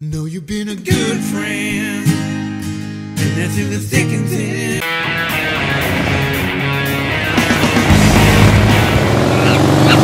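Background music over the closing screens; about five seconds in it gives way to a louder, noisier passage that builds toward the end.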